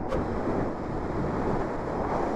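Steady wind rushing over the microphone of a rider on an electric motorcycle at road speed, with no engine note.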